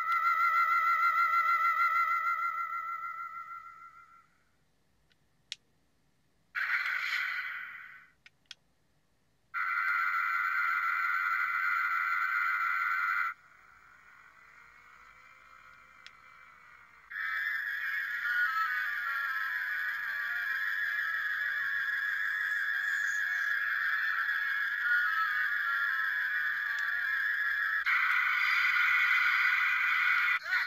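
Ultra Replica Beta Capsule transformation toy playing one electronic Ultraman special-attack sound effect after another through its small speaker, each set off by a long press of its A button. The first is a ringing tone that fades out over about four seconds. A short burst follows, then longer steady beam effects fill most of the rest, with faint clicks in the gaps.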